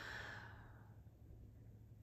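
A woman's long, soft breath out that fades away over about the first second, followed by near silence with a faint low hum.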